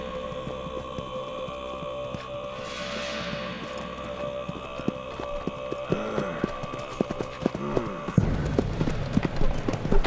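Hoofbeats of a group of horses clip-clopping, coming closer over a held orchestral music score. The hoofbeats grow louder and denser over the last few seconds as the music drops away.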